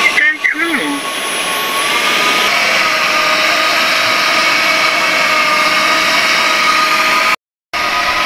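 Hutt C6 window-cleaning robot running on the glass: the steady whine of its suction fan, which holds it to the pane. The sound cuts out completely for a moment near the end.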